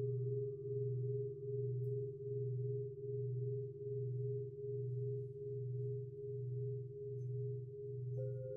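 Large Japanese standing temple bells ringing on after being struck. A deep low hum wavers in a slow beat a little over once a second, under steady higher overtones, and no new strike falls within these seconds.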